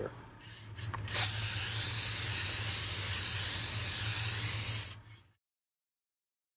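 Aerosol can of Clear Guard satin protective lacquer spraying in one steady hiss of about four seconds, starting about a second in and stopping near the end, as a seal coat over a dye oxide patina. A low steady hum runs underneath.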